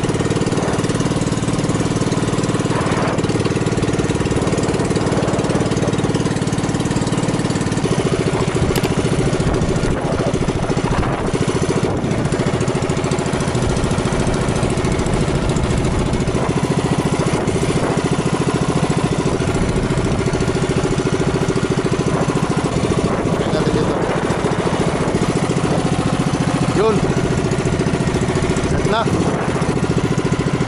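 Small gasoline engine of a motorized outrigger boat running steadily at cruising speed while the boat is under way.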